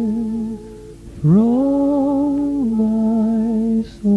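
Slow vocal melody in long held notes: a low note, a dip, then a swoop up to a higher held note about a second in, stepping back down to the low note before a short break near the end.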